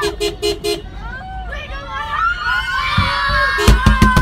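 Car horn tooting four short beeps in quick succession, then once more near the end, over a crowd of people shouting and cheering.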